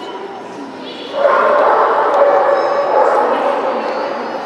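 Dog barking and yipping with voices around it; a loud, dense stretch of sound starts about a second in and fades after about two seconds.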